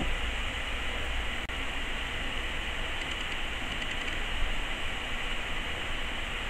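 Steady background hiss with a low hum underneath, even throughout, and one faint tick about one and a half seconds in.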